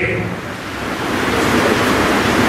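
Audience applause: a dense, even patter of many hands clapping that swells about half a second in and then holds steady.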